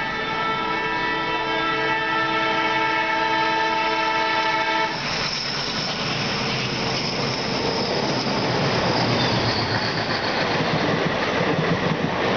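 A multi-tone diesel locomotive horn is held steadily for about the first five seconds, then cuts off. The approaching express, hauled by twin ALCO diesel locomotives, then passes on the adjacent track in a rising rush of rumble and wheel clatter that grows louder as the coaches go by close to the halted train.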